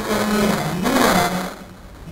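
A man speaking into a lectern microphone, pausing near the end.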